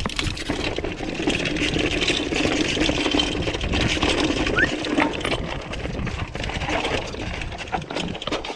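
Mountain bike riding down a rocky trail: tyres crunching over rock and loose stones, with the bike rattling in quick, irregular clicks.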